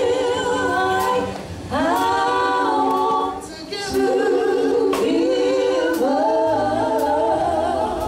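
A women's gospel vocal group singing in harmony through microphones and a PA, in phrases that break off briefly about two and three and a half seconds in, over sharp beats about once a second.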